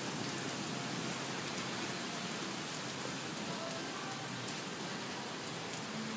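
Steady rain falling, an even hiss with no distinct drops or other events standing out.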